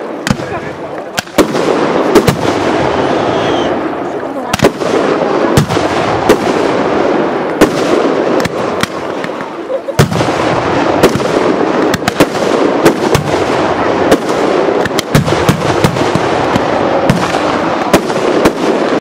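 Pyrotechnics going off: a continuous crackling hiss with many sharp bangs at irregular intervals, about one a second and sometimes in quick pairs.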